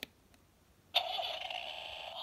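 A sharp plastic click as the Vtech Rocking Animal Bus is switched on, then about a second in its small speaker starts a steady electronic start-up sound effect that goes on until the end.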